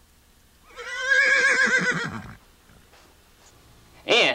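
A horse whinnying once, about a second and a half long, with a quavering pitch that falls away at the end.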